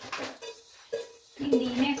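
Wooden spoon scraping and knocking in a stainless steel saucepan as buttered biscuit-crumb cheesecake base is tipped out into a cake tin, with a short metallic clink just before a second in.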